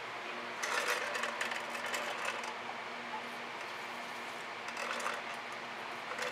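Soft scraping and rubbing as paint is swiped across a canvas and the board is handled, in a stretch starting about half a second in and again briefly near five seconds. A steady low hum runs underneath.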